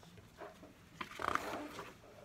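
A page of a large hardcover picture book being turned by hand: a short papery rustle starting sharply about a second in and lasting under a second.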